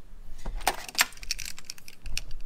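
Metal clinking and rattling as a tubular hand-cranked craft extruder, with its metal crank and end fittings, is picked up off a stainless-steel bench and handled. It is a quick run of sharp, ringing clicks, the sharpest about half a second and a second in.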